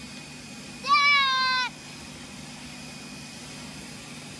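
A young child's single high-pitched squeal, about a second in and lasting under a second, with a slight fall in pitch.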